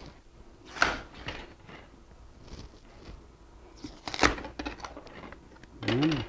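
Glued 0.080-inch styrene sheet mold-box panels being cracked and pulled off a cured urethane rubber mold: scattered sharp plastic snaps and clicks, the loudest about four seconds in.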